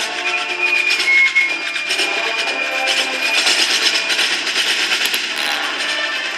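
Marching band playing: wind instruments hold notes at first, then a busier passage takes over that is dominated by rapid, noisy drum and percussion strokes.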